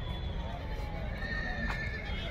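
A horse whinnying in the distance, a high held call in the second half, over a low rumble and faint voices.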